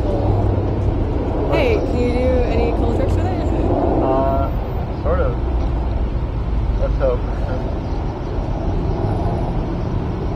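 A person's voice in a few brief sounds over a steady low rumble.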